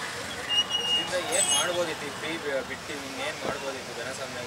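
Street traffic noise with faint background voices of people talking, and a couple of brief high-pitched beeps in the first two seconds.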